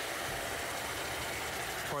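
Butternut squash sauce sizzling steadily in a hot pan just after being poured in, an even hiss.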